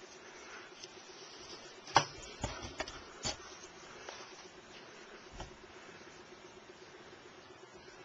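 A few sharp clicks and light knocks of things being handled, the loudest about two seconds in and the last around five seconds in, over a faint steady hum.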